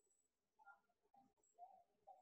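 Very faint squeaks of a marker drawing curved strokes on a whiteboard, several short squeaks in a row.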